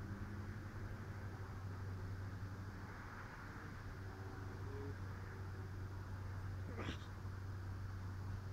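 A steady low hum, with one short rising squeak about seven seconds in.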